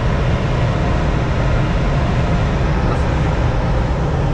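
Steady rush of air noise in a glider's cockpit in flight, with a strong, uneven low rumble underneath.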